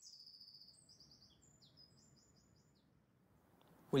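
Small birds chirping faintly: a string of high chirps in the first two seconds, then a quiet outdoor hush.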